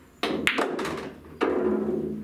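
Pool shot: the cue tip clicks against the cue ball, which cracks into an object ball, followed by a few quicker clicks. About a second and a half in a heavier knock rings on and fades as the object ball drops into a pocket and runs down into the table's ball return.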